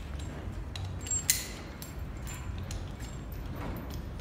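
Metal rope access hardware (carabiners and devices on slings) clicking and clinking as it is handled and moved along. There are a few light ticks and one sharp click about a second in, which is the loudest sound.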